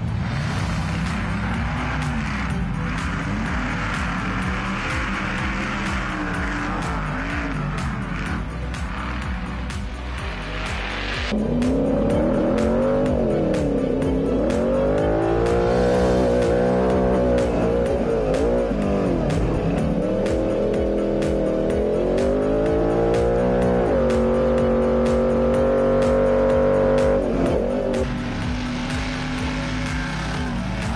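An off-road race car's engine revving and accelerating, its pitch rising and falling through gear changes. About eleven seconds in, it becomes louder and closer, sounding as if from inside the cab. Near the end it holds one steady pitch for a few seconds before dropping back.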